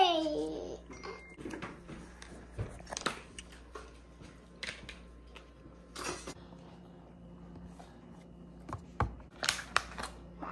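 A toddler's brief high-pitched vocal sound at the very start, then scattered light clicks and taps as small candy pieces and a plastic chocolate mould are handled on a metal countertop, a few seconds apart.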